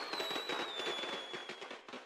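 Crackling like firecrackers, with a thin whistle slowly falling in pitch, as the song's music dies out. It all fades steadily.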